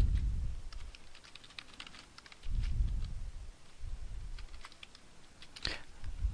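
Typing on a computer keyboard: a run of quick, light key clicks, with a sharper click near the end. A low rumbling noise swells at the start and again about two and a half seconds in.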